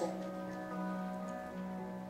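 Soft live instrumental music from the worship band, with steady, long-held chords.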